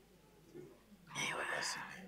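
A short pause in speech, then about a second in a brief breathy, whispered stretch of a person's voice.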